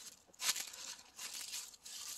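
Footsteps crunching through dry fallen leaves, about three steps.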